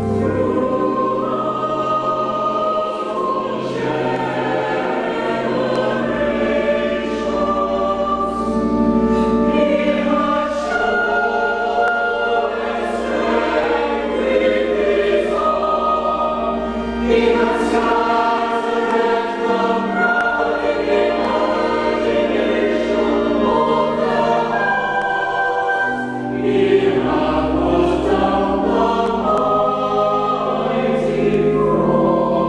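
Church choir singing with organ accompaniment, the voices moving in several parts over sustained low organ notes.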